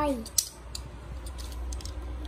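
Small plastic parts of a transforming toy car clicking as they are fitted and snapped together: one sharp click about half a second in, then a few faint clicks.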